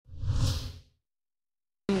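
Short whoosh sound effect of a TV news logo ident, with a deep rumble under it, swelling and dying away within the first second.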